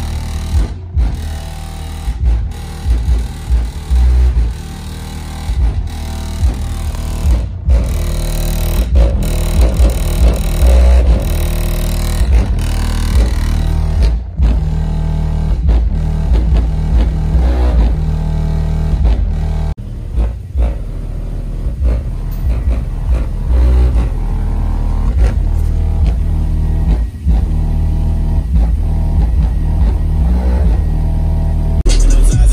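Bass-heavy music played loud through a car audio system with two 15-inch American Bass Elite subwoofers, heard from outside the vehicle. Deep bass dominates throughout, broken by brief sudden dropouts.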